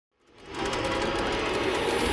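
Logo-intro sound effect: a dense, rapidly fluttering riser that fades in about a third of a second in and slowly grows louder.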